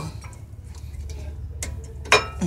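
Brake pads being slid into a car's front caliper bracket, with one sharp metal click about one and a half seconds in, over a steady low rumble.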